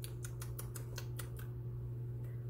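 A quick run of light clicks and ticks, about ten in the first second and a half and then only a few, as a small cosmetic package is handled and opened. A steady low hum runs underneath.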